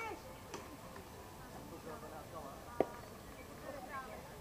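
A single sharp knock with a brief ringing tail about three quarters of the way through: a slowpitch softball striking something at home plate.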